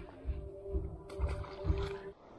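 Wind buffeting the action camera's microphone in repeated low rumbling gusts, over a faint steady tone.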